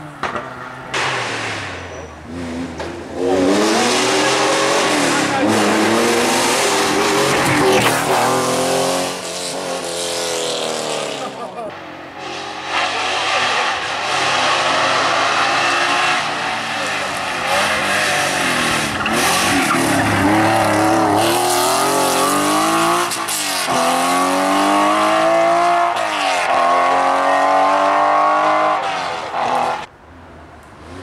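Porsche 911 SC RS rally car's air-cooled flat-six accelerating hard, its revs climbing through the gears again and again, with short lifts between shifts and a quieter spell in the middle.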